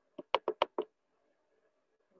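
A quick run of five sharp taps or knocks, about a second long, heard over a video call.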